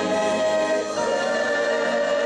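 Church choir singing in harmony, holding long notes, with a change of chord about a second in.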